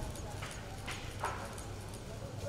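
Footsteps on pavement, a few irregular sharp taps of shoes and heeled boots as a small group walks past, over a low murmur of the crowd.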